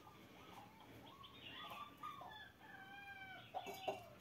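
A rooster crowing faintly: a few short calls, then one long crow of about two seconds in the second half that ends slightly falling. A few faint knocks near the end.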